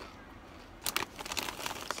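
Doritos tortilla chips being eaten from their bag: a run of sharp, irregular crinkles and crunches starting about a second in.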